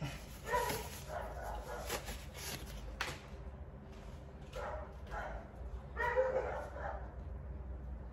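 Dogs barking in repeated short bursts, the loudest run near the end, with a single sharp knock about three seconds in.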